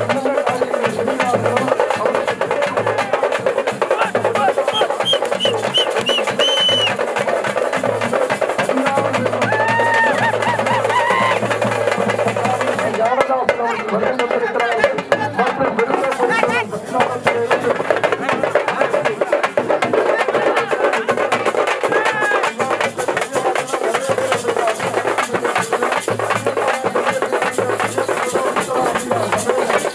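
A festival drum band beating a fast, steady rhythm, with crowd voices and shouts over it.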